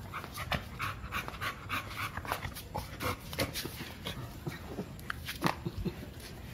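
American Bully dog panting close to the microphone in quick short breaths during play, with a few sharper clicks near the end.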